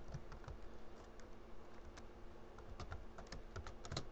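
Typing on a computer keyboard: a scatter of faint, irregular keystroke clicks.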